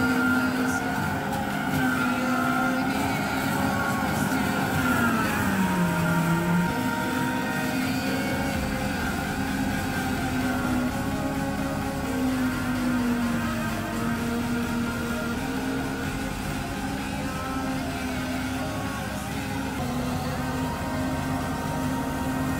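Tractor engine running under load, driving a trailed forage harvester that is chopping maize: a steady drone whose pitch sags for a moment about five seconds in, as the engine is pulled down, and then recovers.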